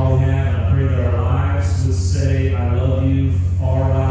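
A man's voice speaking into a handheld microphone, amplified over a PA, with a steady low hum running underneath.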